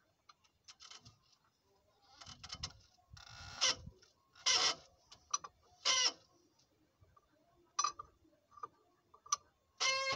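Rubber V-belts being worked by hand onto the air compressor pulley of an OM 366 LA diesel engine: scattered rubbing, scraping and clicking of belt against pulley grooves, with a few louder rasping bursts in the middle and again near the end.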